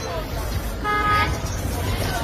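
A short car horn toot about a second in, over a low steady traffic rumble.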